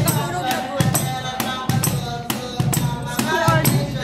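Wooden cajón played by hand in a steady rhythm, deep bass thumps alternating with sharp, rattling slaps on the snare edge, with singing over the beat.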